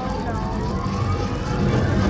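Film sound effect of a machine powering up, heard over cinema speakers: a rising whine over a swelling rumble that grows louder, then cuts off abruptly just after.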